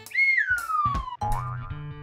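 Light background music with a cartoon sound effect: a tone slides down in pitch over about the first second, followed by a short rising note.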